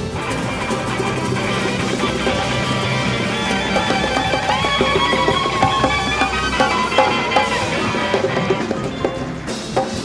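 A large live band playing a rock song together: electric guitars, a drum kit and violins.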